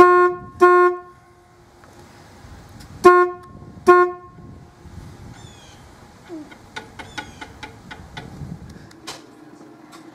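A forklift's horn honked four short times: two blasts close together at the start, then two more about three and four seconds in, each a single steady buzzing tone. Faint scattered clicks follow.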